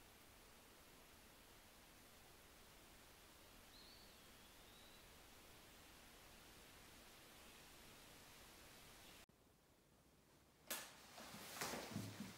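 Near silence: faint room hiss that drops out entirely about nine seconds in, followed by a few soft handling noises, short rustles and taps, in the last second or so.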